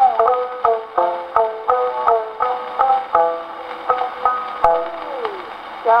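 Shamisen interlude from a Taisho-era acoustically recorded (mechanical-horn) Nitto 78 rpm disc, heard through a Victor Victrola acoustic gramophone: a run of plucked notes, each struck and dying away, between sung lines of a kouta, with the thin, top-less tone of an early acoustic recording.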